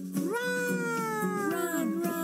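Children's song music with a high cartoonish voice crying one long, drawn-out "run!", whose pitch sags and drops away near the end.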